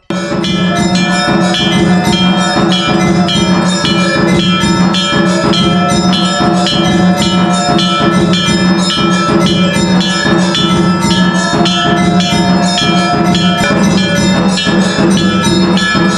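Temple aarti: bells ringing continuously over a fast, even beat of struck percussion, starting suddenly and staying loud.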